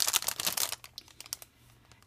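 Clear plastic packaging crinkling as it is handled, a quick run of crackles that stops about a second in.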